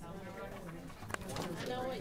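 Indistinct voices talking quietly, with a short click about a second in.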